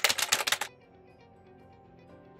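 Rapid typewriter-key clicks, a sound effect for text being typed out on screen, stopping under a second in. Soft background music with held notes goes on underneath.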